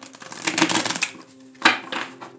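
A deck of tarot cards being shuffled: a fast burst of flicking card edges lasting about half a second, then a single sharp tap or snap of the deck just over a second and a half in.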